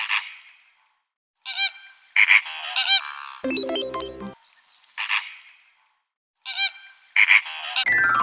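Flock of flamingos giving repeated short, nasal, goose-like honking calls in scattered bursts. A short musical jingle cuts in about three and a half seconds in.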